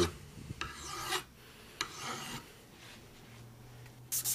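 A hand file rasping across the edge of a brass pommel clamped in a vise, cutting a bevel into the metal: two strokes, one about a second in and one about two seconds in.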